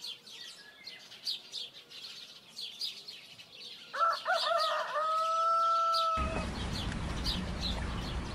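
Small birds chirping over and over, with a rooster crowing about four seconds in: a few rising notes, then one long held note that cuts off after about two seconds. A steady background noise comes up suddenly just after the crow.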